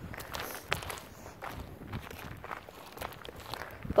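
Footsteps on gravelly dirt ground, irregular crunching and scuffing steps of someone walking.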